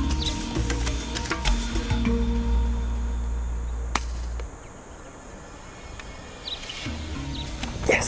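Background music with a steady beat and deep bass. About four seconds in comes a single sharp crack, after which the music drops away for about two seconds and returns near the end.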